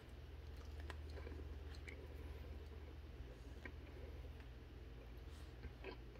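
Faint chewing of a piece of dried apricot, with a few small clicks, over a low steady hum.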